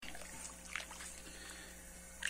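Faint sloshing of hot mash as a paddle stirs the grain in a brew-in-a-bag pot, over a steady low hum.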